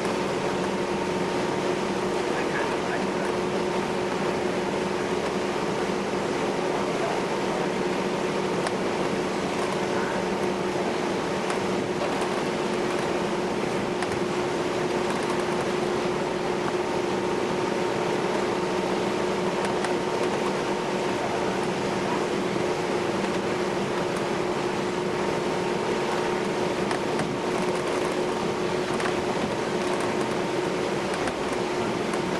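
Passenger ferry under way, heard inside its seating cabin: a steady drone of engines and ventilation, a constant hum with two fixed tones under an even rushing noise that never changes.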